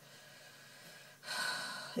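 Near silence, then about a second in a woman's audible intake of breath, a breathy hiss lasting most of a second just before she speaks.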